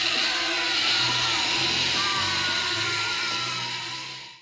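Horror film soundtrack: eerie music under a dense rushing noise, with faint tones that glide slowly downward, fading out near the end.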